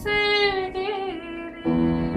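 A woman singing with digital piano accompaniment: a sung phrase that wavers in pitch, then piano chords coming in strongly about one and a half seconds in.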